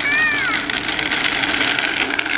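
A child's short high-pitched squeal at the start, then a steady gritty rushing of a child's bicycle tyres rolling over rough asphalt.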